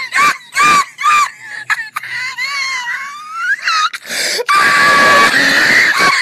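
High-pitched screaming voice: several short squeals in the first second and a half, a wavering stretch in the middle, then one long held scream near the end.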